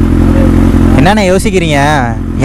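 Motorcycle engine idling steadily. A man's voice starts talking over it about halfway through.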